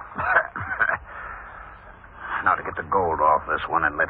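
Voices from an old radio drama, thin and band-limited like an old broadcast recording. A short stretch of steady hiss comes about a second in, between the spoken lines.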